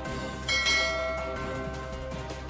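A bright bell chime sounds about half a second in and fades away over background music: the notification-bell sound effect of a subscribe-button animation.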